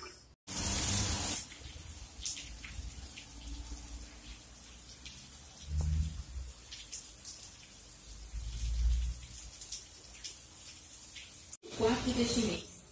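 Faint light rain with scattered drips ticking. There is a short hiss near the start and low rumbles around the middle and again later.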